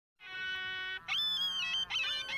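Music on a reedy wind instrument: a held note, then a higher, slightly wavering note, with another note beginning near the end.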